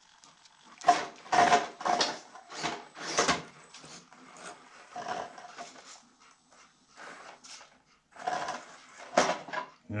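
A Panda Hobby Tetra micro RC crawler's electric motor and drivetrain whirring in a series of short throttle bursts as it climbs over rocks, its oversized tires scrabbling on the stone. The truck is geared high, so it is driven in jabs rather than a steady crawl.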